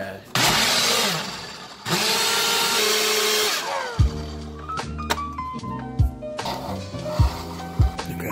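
Personal bullet-style blender mixing a protein shake in two runs of about a second and a half each, the second winding down with a falling whine. Then background music with a steady beat starts about four seconds in.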